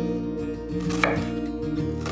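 A chef's knife cutting through an onion and striking the wooden cutting board, a sharp stroke about a second in, over background acoustic guitar music.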